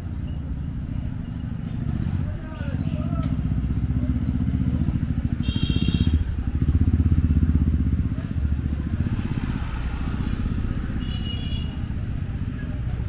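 Street traffic: a steady low motor rumble with scooters passing close by, a short high-pitched beep about halfway through and another near the end.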